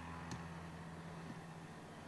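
Quiet room tone: a faint, steady low hum under a light hiss, with one soft click about a third of a second in.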